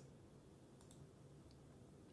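Near silence with a couple of faint computer-mouse clicks, the clearest just under a second in.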